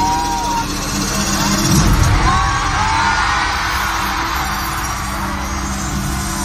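A large crowd cheering, with high whoops and screams rising and falling above the steady noise of the crowd, over music.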